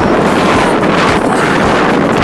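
Strong wind blowing across the phone's microphone: a loud, continuous rushing noise with a low rumble.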